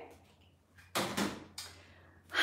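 A short knock or clatter of something being handled about a second in, with a fainter second knock just after, against quiet room tone.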